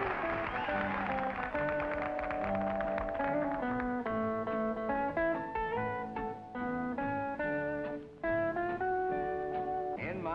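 Instrumental country guitar music: a picked melody of single notes, which becomes crisper and more clearly plucked about a third of the way in.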